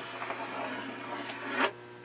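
Chalk scratching on a blackboard as it writes: a steady rasp that stops shortly before the end.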